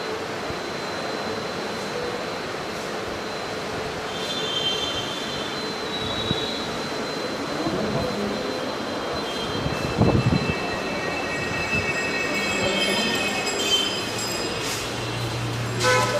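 Steady ambient noise of a busy public building, with a thin high-pitched whine and a heavy thump about ten seconds in as the phone is handled. Faint high tones come and go in the second half.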